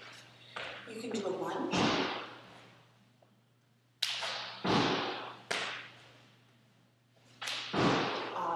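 About six heavy thuds spread over several seconds, each ringing out briefly in a reverberant gym hall, with the loudest near the two-second mark and just before the five-second mark.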